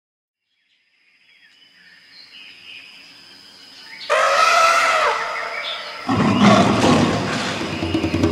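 From silence a faint sound fades in. About four seconds in a loud animal-like roar sounds for about a second, and about two seconds later loud music begins.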